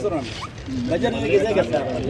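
Men's voices talking among themselves, with a short rasp near the start.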